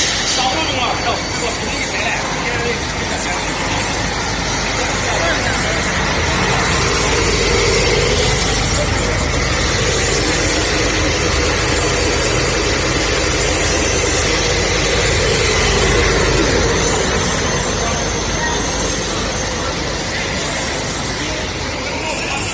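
Continuous biochar carbonization machine running: a steady mechanical noise from its motors, rotary valves and conveyors, with a faint thin high whine.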